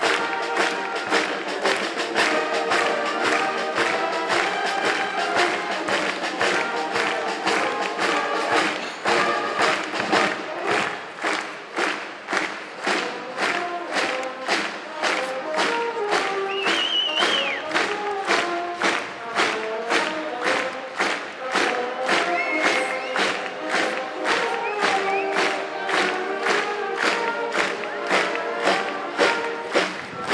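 Austrian village brass band (Musikverein) playing a march on the move, over a steady drum beat of about two beats a second. A brief high whoop rings out about halfway through.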